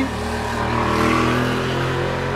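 A motor vehicle engine running with a steady hum of several held tones, its noise swelling slightly about halfway through.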